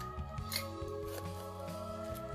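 Soft background music with sustained tones, over the crisp rustle and crackle of dried herb leaves being handled in a glass jar, with a sharper crackle about half a second in.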